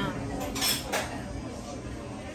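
Cutlery and dishes clinking in a restaurant, two sharp clinks about half a second and a second in, over a low room murmur.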